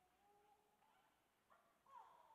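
Near silence: faint room tone, with a few very faint brief tones.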